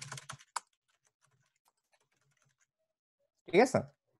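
Typing on a computer keyboard: a quick run of keystrokes at the start, then fainter scattered taps over the next couple of seconds.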